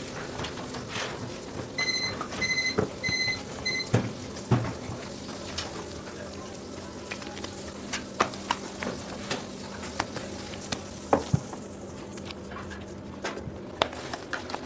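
Kitchen work sounds: scattered knocks and clatter of handling on a stainless steel table over a steady low hum, with four quick electronic beeps about two seconds in.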